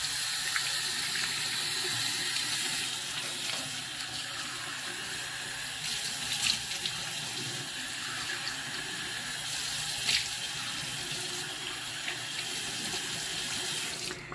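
Bathroom sink tap running steadily while the face is rinsed after a shave, with a couple of brief splashes. The water shuts off just before the end.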